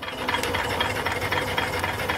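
Small stationary steam engine running steadily off its boiler: an even mechanical clatter over a low hum.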